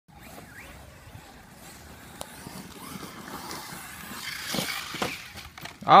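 Agama Racing A8TE RC truggy driving on a loose dirt track: motor whine and tyres on dirt, faint at first and getting louder about four seconds in, with short rising whines as it speeds up.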